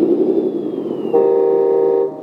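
The small speaker of a LESU RC truck sound module playing its simulated R6 engine rumble, then, about a second in, an electronic horn: a steady single-pitched tone held for just under a second.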